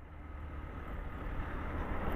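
Honda CG 125 Fan motorcycle's single-cylinder engine running as the bike rides along, a steady low hum that fades in gradually from quiet.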